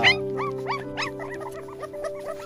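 Newborn puppies, too young to have teeth, crying for food: a quick series of short, high-pitched cries, each rising then falling in pitch, about four a second and growing fainter, over background music with held notes.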